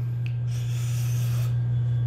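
A man draws a rushing breath through his mouth for about a second, reacting to the heat of a super-hot pepper sauce. It comes after a faint click, over a steady low hum.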